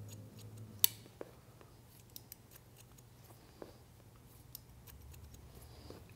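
Hair-cutting shears snipping through wet hair: a handful of separate, crisp snips spread out, the sharpest about a second in, over a low steady hum.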